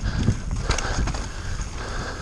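Giant Reign full-suspension mountain bike descending a rough, wet dirt trail at speed: tyres rumbling over dirt, roots and rocks, with the bike rattling and knocking irregularly several times a second.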